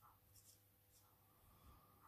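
Near silence: a few faint strokes of a fine watercolour brush on cold press paper, over a steady low hum.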